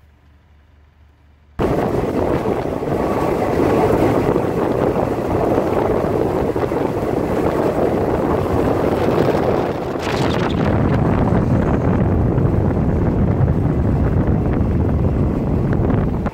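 Moving passenger train heard through an open carriage window: a loud, even rushing of track and wind noise, with wind on the microphone. It starts suddenly after a faint quiet opening and turns deeper about ten seconds in.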